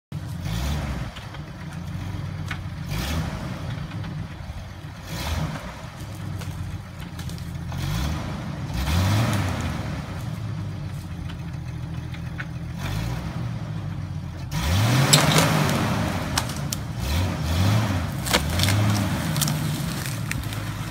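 Jeep engine revving up and falling back again and again under load as it pulls a dead oak trunk on a tow strap. A louder stretch of revs, with a rushing noise, sets in about three quarters of the way through as the log drags along the ground.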